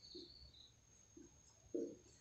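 Faint squeak of a felt-tip marker writing on a whiteboard in short strokes, with a brief low sound near the end.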